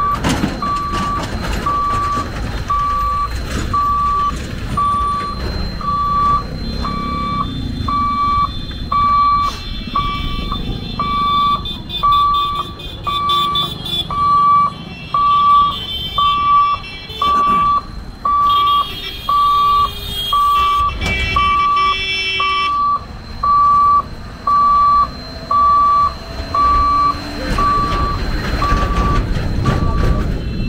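Level-crossing warning buzzer beeping steadily about once a second while the boom barrier is lowered, over the rumble of passing trucks and tractors. Vehicle horns sound several times in the middle and again near the end.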